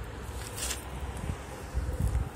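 Wind buffeting a phone's microphone outdoors, a steady low rumble that swells near the end, with a brief rustle about half a second in.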